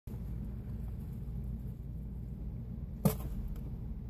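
Steady low background hum, with one sharp knock about three seconds in.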